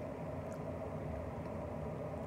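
Quiet room tone: a steady low background hum, with a faint tick about half a second in.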